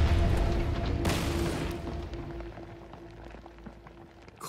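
Cartoon explosion sound effect over background music: a rumbling blast with a second burst about a second in, fading away over the next couple of seconds, while a single musical note holds steady underneath.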